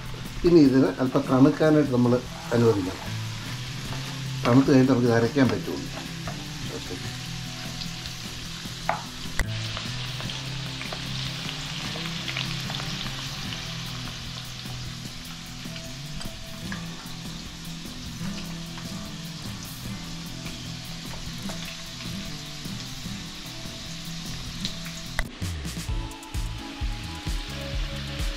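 Small whole potatoes frying in hot oil in a wok, a steady sizzle, while vegetables are stirred with a wooden spatula in a second pan.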